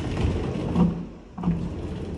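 Interior pocket door being pulled out of its wall pocket by its flush edge pull, rolling along its track with a low rumble and two louder bumps along the way.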